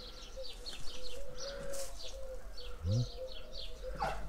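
Small birds chirping outdoors: a rapid run of short, high, falling chirps, about three a second, over a faint steady hum.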